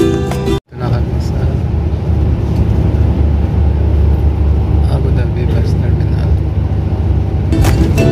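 Overlaid music cuts off sharply less than a second in, giving way to the steady low rumble of a moving vehicle heard from inside, with faint voices in the middle; the music comes back just before the end.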